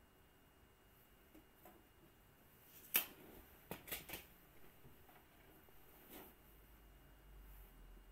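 A few short, sharp clicks over faint room tone: one loud click about three seconds in, a quick run of three more just before and after four seconds, and a softer one near six seconds.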